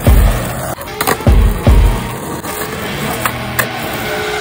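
Skateboard rolling on concrete with a few sharp knocks of the board, under music with a heavy, thumping bass-drum beat.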